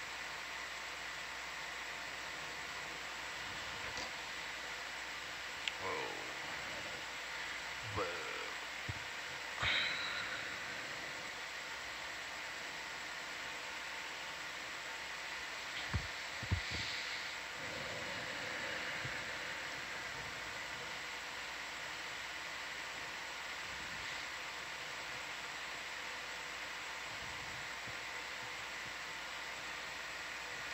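Steady hiss of the ROV control-room microphone feed under a faint steady hum. A few brief, faint voice fragments come through in the first twenty seconds, along with a couple of sharp clicks around the middle.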